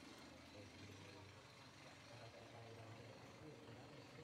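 Near silence: faint outdoor ambience with a low, uneven hum.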